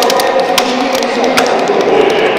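Scattered handclaps from spectators, irregular sharp claps greeting an athlete's introduction, over steady background music.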